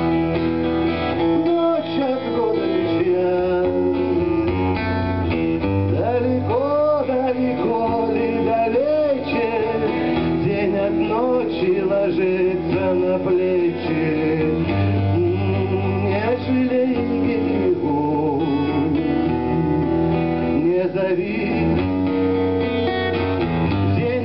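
Live song: a man singing to his own acoustic guitar accompaniment, the vocal line gliding and bending over steadily played chords.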